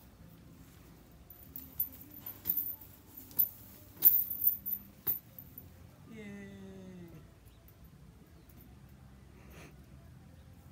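Metal clinking and rattling from a rope hammock's hanging chains and hardware as a man climbs in and settles, a string of sharp clinks over a few seconds, loudest about four seconds in. Then a man's voice makes one drawn-out sound falling in pitch, lasting about a second.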